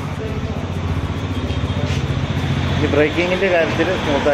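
Royal Enfield Bullet 350's single-cylinder engine idling steadily.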